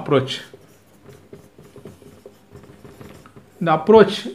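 Dry-erase marker writing on a whiteboard: a run of faint, short scratchy strokes as a word is written.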